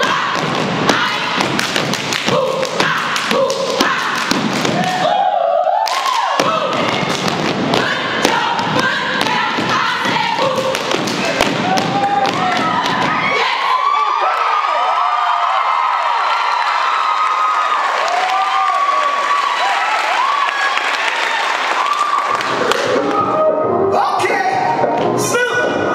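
Step team stepping on a wooden stage: rapid, rhythmic stomps and claps with voices calling out. A little past the middle the stomping thins out and voices carry on shouting over a steady hiss until near the end, when the heavy steps return.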